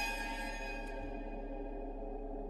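Eerie horror-film score: a held drone of low tones under a high, shimmering ringing that fades away over the first second or so.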